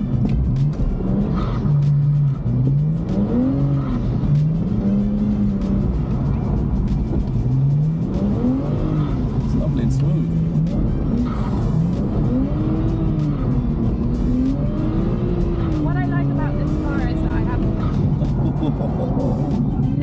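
BMW 335's straight-six engine heard from inside the cabin, its revs rising and falling again and again as the car is driven through drifts, over loud road and tyre rumble.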